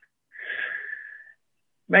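A man drawing one breath in, about a second long, during a pause in his speech.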